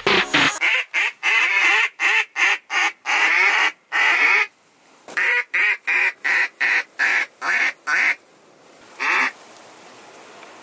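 A hunter's duck call blown in runs of loud quacks: about a dozen quick quacks in the first four seconds, a short pause, a second run of about nine, then one last quack near the end. It is calling to ducks flying overhead.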